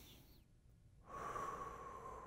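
A man holds a deep breath; then, about a second in, he breathes out audibly through his mouth in one long exhale.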